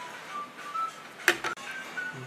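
Faint background music with short, thin, high notes, and one sharp click about 1.3 seconds in.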